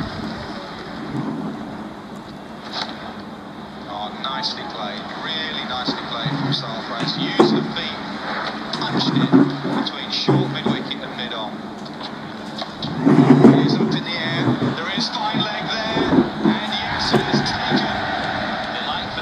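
Indistinct talking from several people, in bursts that grow louder toward the middle, over a steady high-pitched background tone.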